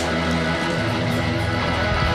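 Outro background music with electric guitar over a bass line and drums.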